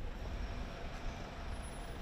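Low, steady rumble of city street traffic.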